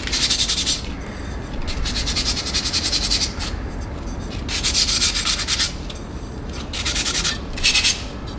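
An unglazed clay dish being sanded by hand to smooth off its sharp edges: dry, scratchy rubbing in about five strokes of differing length, the longest lasting well over a second.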